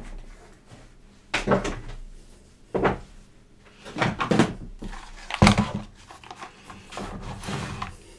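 Irregular knocks and clatter in a small room, coming in short clusters every second or so, with quiet room noise in between.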